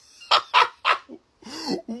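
A man laughing hard: three short, breathy bursts about a third of a second apart, then a voiced, higher-pitched laugh near the end.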